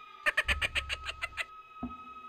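Edited-in sound effect: a quick run of about eight rapid pulses, roughly seven a second, over a steady high tone, followed by a short low thump near the end.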